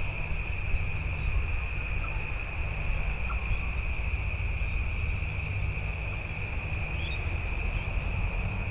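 Steady, unbroken high-pitched chirring of insects, with a low rumble of wind on the microphone underneath.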